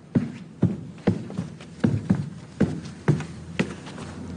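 Footsteps at a steady walking pace, about two steps a second, each a short thud.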